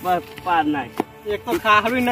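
A voice in short, pitched phrases, talking or chanting, with one sharp knock about halfway through.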